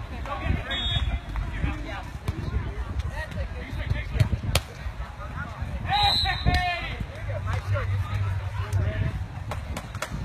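Outdoor ambience of low rumble and faint, indistinct voices, with a single sharp tap about four and a half seconds in and a short pitched call around six seconds.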